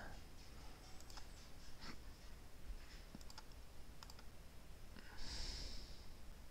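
Faint, sparse computer mouse clicks, a handful spread over several seconds, with a short soft hiss near the end.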